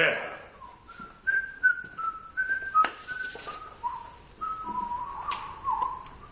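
A person whistling a tune in short held notes that step up and down between a few pitches, with a few sharp clicks in between.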